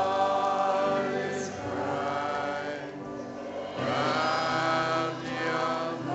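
A woman singing a slow Christmas worship song with a live band of piano and electric bass. Two long, held phrases, the second starting about four seconds in.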